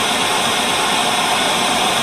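Steady hiss of analogue TV static, used as an end-of-video sound effect.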